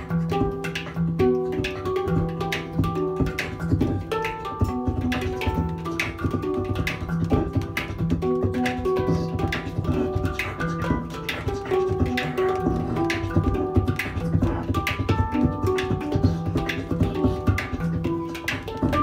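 A hang (handpan) played by hand in a repeating pattern of ringing notes, with live beatboxing over it laying down a steady run of quick percussive hits.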